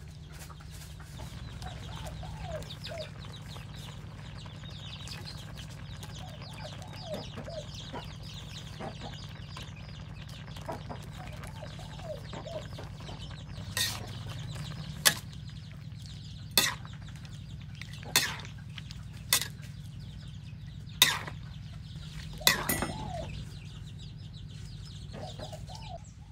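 Chickens clucking now and then over a steady low hum. In the second half comes a run of about seven sharp knocks, roughly one every second and a half.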